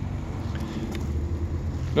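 Steady low rumble of outdoor background noise, with no distinct event in it.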